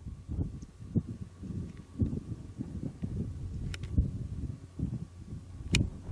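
Wind buffeting the camera microphone in uneven low gusts, with three short sharp clicks.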